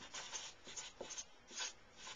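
Felt-tip marker writing on paper, a faint run of short, irregular scratchy strokes as letters are formed.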